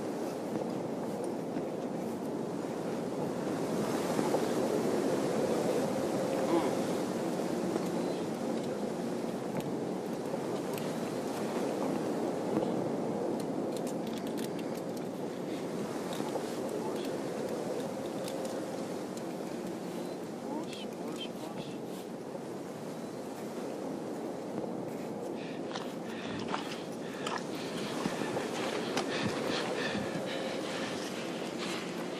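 A steady rushing noise, like wind on the microphone, with faint indistinct voices under it. A few sharp clicks come near the end.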